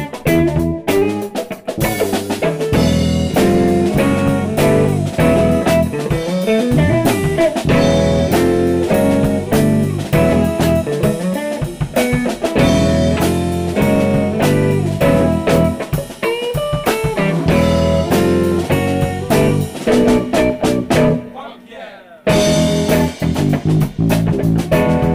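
A funk trio playing live: electric bass, a Tama drum kit and electric guitar locking into a tight groove. About three seconds before the end the playing drops away for about a second, then the whole band comes back in together.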